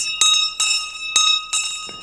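A bell rung repeatedly, about two strikes a second, each strike renewing a bright, sustained ring that fades out near the end.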